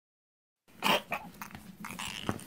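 Silence, then about three-quarters of a second in an animal sound effect begins: one loud noisy burst followed by several shorter ones.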